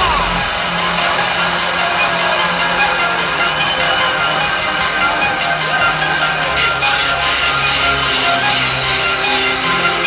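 Hardstyle electronic dance music played loud over a club sound system, as heard from within the crowd. The low kick drum stops about half a second in, leaving a breakdown of held synth chords and melody over a stepping bass line.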